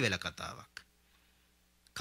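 A man's voice speaking into a close microphone, breaking off under a second in. A short, quiet pause follows, with a small click at the start of the pause and another just before the speech resumes.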